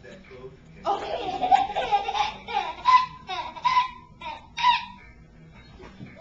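Laughter: a run of high-pitched bursts of laughing that starts about a second in and lasts about four seconds.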